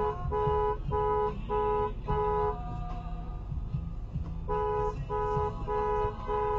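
Two-note car horn honked in a rapid series of short beeps, about five in a row, then a pause of about two seconds before the honking starts again near the end.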